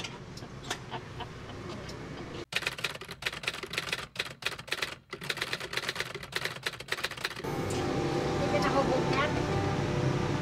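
Rapid typewriter key clacks for about five seconds, a sound effect for on-screen text being typed out letter by letter. Music comes in near the end.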